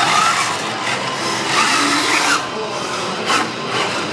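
Electric drive motors of small combat robots whining, the pitch rising and falling as they drive about, over a steady background noise.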